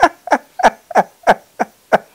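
A man laughing in a run of short "ha" bursts, about three or four a second, each one falling in pitch.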